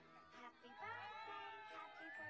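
Faint playback of the celebration clip's soundtrack: high, sliding cries like a voice or a meow begin about half a second in, over a steady low note.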